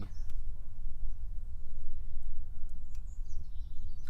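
Steady low outdoor rumble on the microphone, with a faint click just after the start and a few faint high bird chirps near the end.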